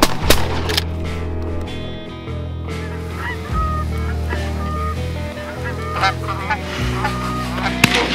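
A flock of geese honking, with short calls scattered through, over background music with a steady low bass.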